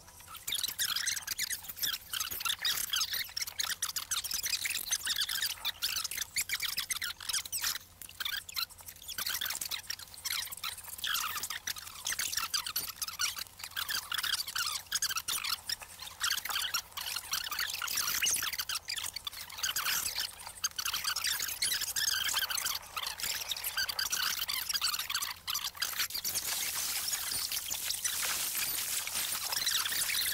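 Water splashing and pouring: a continuous rush packed with many small irregular splashes.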